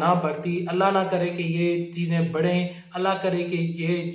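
A man speaking Urdu into a clip-on microphone in a steady, nearly level-pitched delivery that sounds almost chanted.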